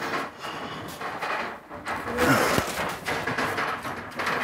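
Rummaging among wooden things: pieces knocking and clattering against each other in scattered, irregular thumps.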